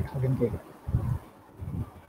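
A man's voice over a video-call link says a word, then trails off into a few low, brief murmurs between pauses.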